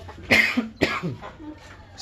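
A person coughing: one loud cough, then a second shorter one about half a second later.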